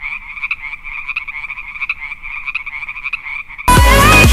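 The music cuts off and a steady chorus of high, rapidly pulsing animal calls fills the gap. The music comes back just before the end.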